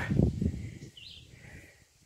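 Faint bird chirps, short calls about a second in, after a brief low rumble at the start.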